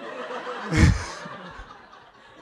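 An audience laughing in a hall, the laughter swelling at once and then fading, with the reader chuckling close to the microphone; a loud low puff hits the microphone a little under a second in.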